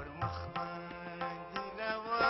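Harmonium playing sustained chords, with hand-drum strokes keeping the rhythm, in South Asian-style folk music. A singing voice comes in near the end.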